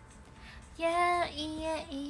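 A woman's voice singing a short phrase of held, steady notes, starting about a second in after a quiet moment.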